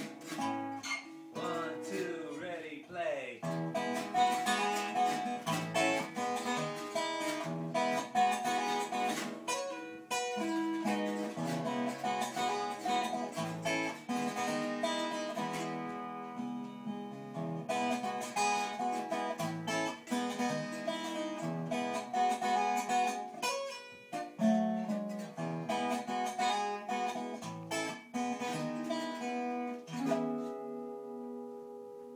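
Acoustic guitar strummed in chords through a song's chorus, with a voice singing along.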